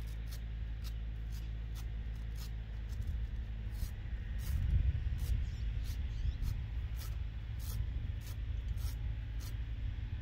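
Wind buffeting the microphone: a low rumble that gusts up from about three seconds in and eases after seven, with scattered sharp clicks over it.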